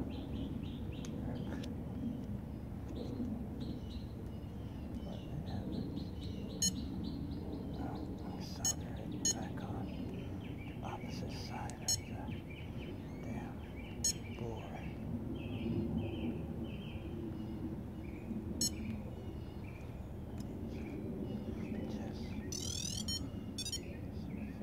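Small birds chirping repeatedly over a steady low background rumble, with a few sharp clicks scattered through and a brief high rising sweep near the end.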